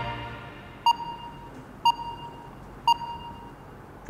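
Three short electronic beeps, one a second, the same clear tone each time, like a countdown timer sound effect, as the tail of background music fades out.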